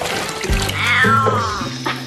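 Tortoiseshell cat giving one long meow that rises and falls, starting about half a second in, while she is being bathed and wetted down in a tub.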